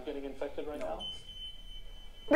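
A man speaking in the playing interview clip, then a steady, high-pitched electronic beep held for about a second.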